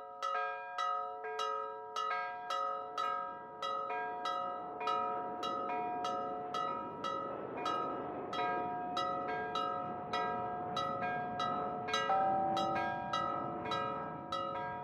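A four-bell church peal, strokes following one another at about two a second, each bell's note ringing on into the next. About twelve seconds in, a deeper, louder tone joins.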